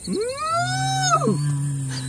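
A long bellowing call that rises in pitch and falls away after about a second. Under it, a steady low drone starts about half a second in.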